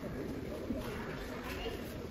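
Faint, indistinct voices over the steady room noise of a busy shop.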